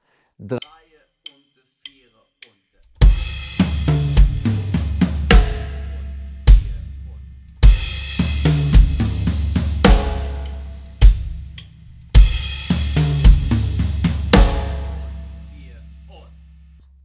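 Pearl drum kit played slowly: a crash cymbal with bass drum opens a short tom-tom figure with paradiddle-style sticking that ends on the snare drum. The figure is played three times in a row, the crash ringing on under each phrase and dying away after the last. A few faint clicks come before the playing starts.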